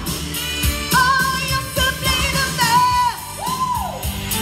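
A woman singing long held notes into a handheld microphone over a pop backing track with a steady beat, ending in a falling swoop near the end.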